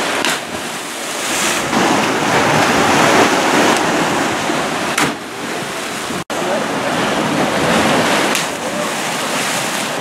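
Ocean surf washing against lava-rock cliffs with wind buffeting the microphone: a loud, steady rush of noise, briefly cut off about six seconds in.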